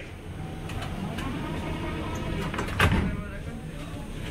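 Prague metro train's sliding doors closing, with a loud knock as they shut about three seconds in, over the low rumble of the station and faint voices.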